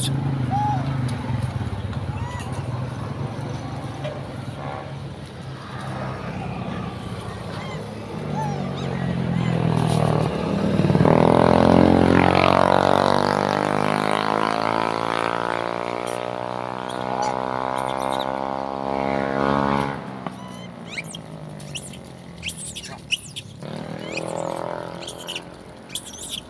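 A motor vehicle's engine droning, building in loudness from about eight seconds in with its pitch slowly shifting, then cutting off suddenly about twenty seconds in.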